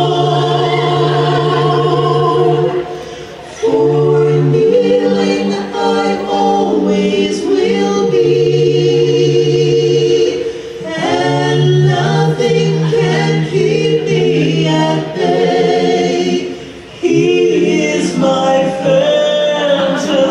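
Choir-style vocal music: several voices singing long held notes in harmony, gospel in feel, with short drops in volume about three seconds in and near seventeen seconds.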